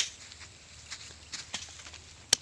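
A sharp click at the very start, then faint rustling and a few soft ticks: hand scissors and hands working among the leaves of an eggplant plant to cut the fruit's stem.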